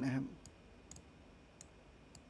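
Computer mouse clicking: three light, sharp clicks spread over a little under two seconds, each well over half a second apart, against a faint steady background hum.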